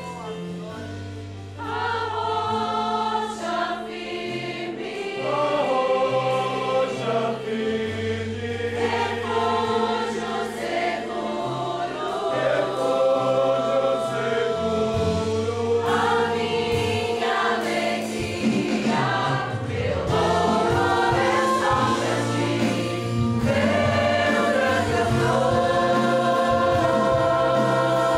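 Congregational worship song in Portuguese, a group of voices singing together over a live church band with sustained low notes. A softer instrumental stretch opens, and the voices come in strongly about one and a half seconds in.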